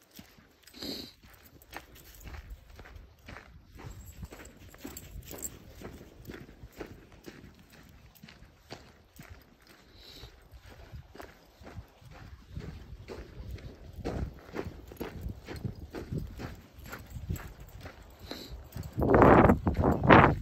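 A hiker's footsteps on a dirt trail with patches of snow, about two steps a second, getting louder in the second half. A louder rushing noise comes in near the end.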